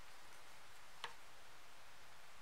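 Quiet room hiss with one faint, short click about halfway through, from hands working yarn with a metal crochet hook.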